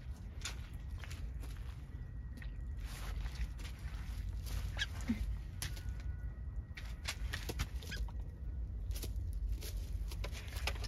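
A few short, faint duck calls among scattered clicks and rustles, over a low steady rumble.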